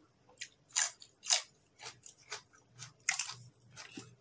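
A person chewing crunchy raw vegetables close to the microphone, with crisp crunches about twice a second. The loudest crunches come a little over a second in and again about three seconds in.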